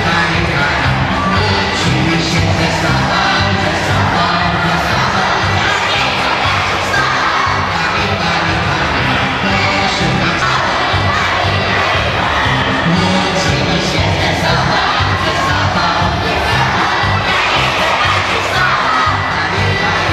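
A crowd of young children shouting and chattering as they dance, over loud dance music with a steady beat.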